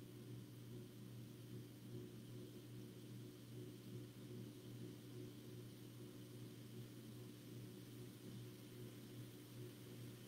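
Near silence: room tone, a faint steady low hum under a light hiss.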